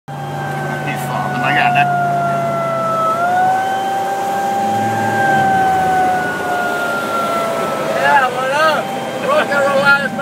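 Vehicle siren sounding a slow wail: one tone that slides slowly down, rises briefly about three seconds in, then slides down again. Near the end quicker wavering tones come in.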